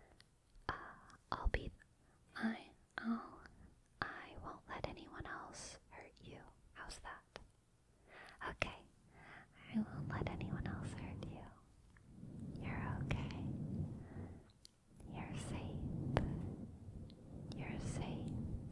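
Close-up whispering into the microphone, broken by short sharp clicks through the first half, then three longer breathy stretches.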